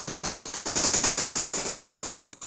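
Rapid, irregular clicking crackle that swells and fades several times and stops just before the end.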